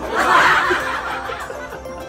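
Two men laughing together, loudest in the first second and then trailing off, over soft background music.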